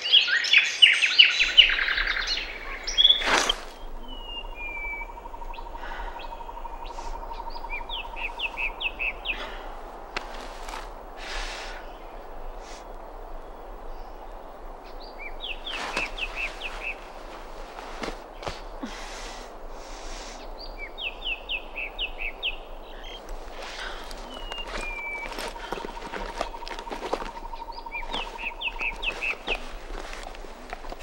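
Songbirds chirping outdoors in short, quick trills that recur every few seconds. The chirping is densest and loudest in the first two seconds, and a sharp click comes about three seconds in.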